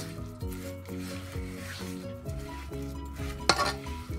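Metal spoon stirring and scraping torn flatbread pieces through hot spiced oil in a granite-coated pot, with a light sizzle, mixing chechebsa. Background music with a stepping melody plays under it.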